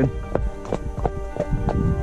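Background music with steady held notes, over a ridden horse's hooves clip-clopping in a regular walking beat on a dirt track.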